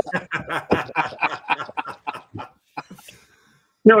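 Men laughing, a quick run of short repeated laughs that dies away after about two and a half seconds.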